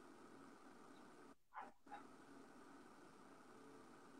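Near silence with faint room hiss, broken about a second and a half in by two short, high-pitched squeaks that rise in pitch.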